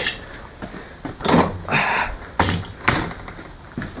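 A hand-operated jack under a quad bike's front being worked to lift it, giving several separate creaking, scraping mechanical strokes about half a second to a second apart.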